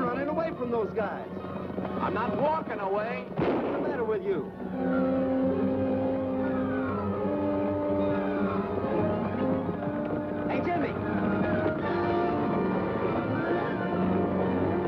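Orchestral western chase music on a film soundtrack. For the first four seconds or so, men's shouts and yells ride over it with a few sharp cracks. After that the music carries on alone in long held notes.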